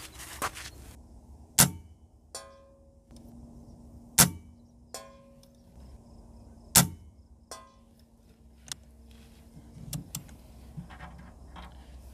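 Three shots from a Benjamin Marauder .177 PCP air rifle firing 12.5-grain NSA slugs, each a sharp crack about two and a half seconds apart. Each shot is followed under a second later by a fainter click, and a few lighter clicks come near the end.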